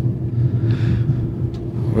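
Steady low running rumble and hum of a moving Aeroexpress electric train, heard from inside the carriage.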